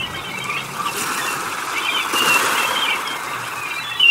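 Gulls calling in short, scattered cries over a steady background hiss, like a seaside sound effect.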